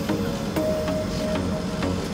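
Steady rumble of a coach bus cabin on the move, with a few light rattles, and background music under it.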